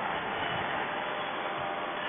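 Low steady hiss of paramotor engine and wind noise left over after the noise-cancelling Bluetooth helmet microphone, heard through its narrow, phone-quality band.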